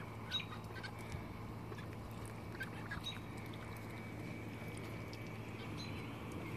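Backyard poultry giving faint, scattered short calls over a low steady hum.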